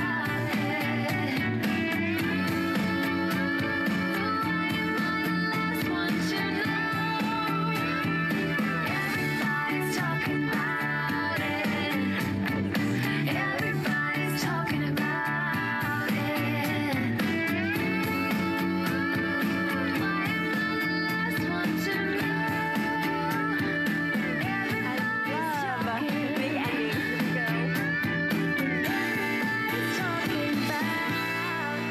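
A song with singing playing from a CD on a Bose Wave Music System IV, its volume turned up high.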